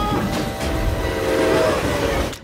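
Toy Thomas the Tank Engine train, given the sound of a full-size locomotive, bearing down along its track: a heavy low rumble with a sustained horn-like blast that fades near the end.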